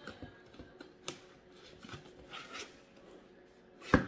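Cardboard product box being handled and pried at the flap: faint rustling and scraping with a small click about a second in, then a sharp knock near the end.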